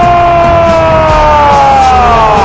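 A sports commentator's long, held goal cry ("gooool"), one unbroken loud note that sinks slowly in pitch toward the end, over stadium crowd noise.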